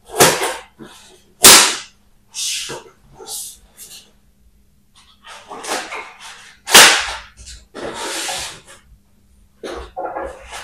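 Scissors snipping and tearing into plastic-wrapped foam packaging, with rustling, scraping and knocks as the package is lifted, turned over and set back down on a wooden table. The sounds come in short, irregular sharp bursts, the loudest about a second and a half in and again about seven seconds in, with a longer rustle just after.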